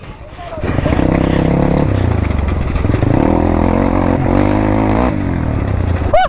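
Dirt bike engine running at a fairly steady speed, its note holding level with a few small steps. It comes up about a second in and eases off shortly after five seconds.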